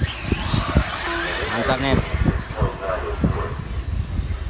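1/8-scale nitro RC buggy engines running on the track, one rising to a high whine near the start, under people talking.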